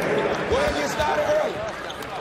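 Basketball game sound in an arena hall: a ball bouncing and voices calling out over the crowd noise.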